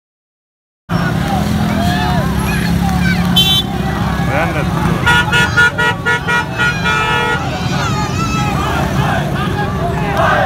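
After a moment of silence, busy street traffic cuts in with engines and crowd voices. A vehicle horn gives one short honk about three seconds in, then a run of rapid repeated honks from about five to seven seconds.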